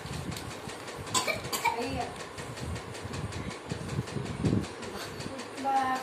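Short, indistinct children's voices, a couple of brief utterances, over a steady low rumbling background.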